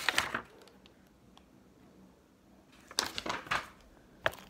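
Packaging crinkling and rustling as a shrink-wrapped DVD case is handled and pulled out of its white wrapping; a short stretch of crinkling at the start, a near-quiet pause, then another brief spell of crinkling about three seconds in.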